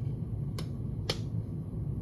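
Two crisp finger snaps about half a second apart, over a steady low hum.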